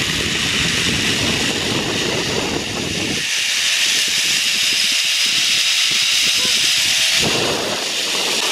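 Zipline ride: a trolley running along the steel cable with a steady high hiss, under wind rushing over the microphone. The low wind buffeting drops away for a few seconds in the middle and comes back near the end.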